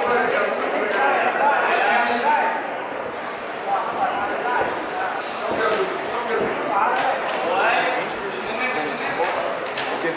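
Boxing-match crowd: several voices shouting and calling out over one another in a large hall, with a few sharp smacks of boxing gloves landing about halfway through and again near the end.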